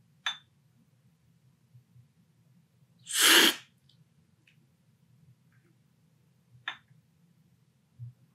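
A loud, sharp slurp of brewed coffee sucked hard off a cupping spoon, lasting about half a second, about three seconds in: the forceful cupping slurp that sprays the coffee across the palate. A few faint clicks come before and after it.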